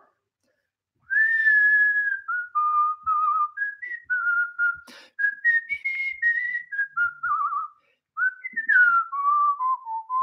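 A man whistling a tune: a single clear line of notes stepping up and down, some held, starting about a second in.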